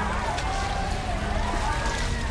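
People crying out without words over a low, steady rumble.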